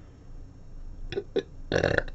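Quiet room tone for about a second, then a person's voice: two short blips and, near the end, a louder, rough, throaty sound.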